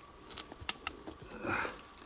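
Four light, sharp clicks in the first second: small hard bits of debris knocking together as soil is dug and sifted. A faint rustle follows about one and a half seconds in.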